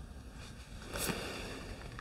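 A tarot card being drawn and laid down on a wooden table: a soft papery slide and rustle about a second in.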